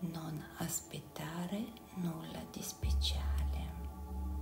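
A voice speaking softly over meditation background music of sustained, steady tones; a deep low drone swells in about three seconds in.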